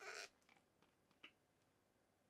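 Near silence: room tone, with a faint brief sound right at the start and one soft tick about a second in.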